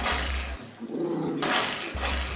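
A puppy growling briefly, about a second in, while it paws and mouths at a spring door stop, with scuffling noise around it.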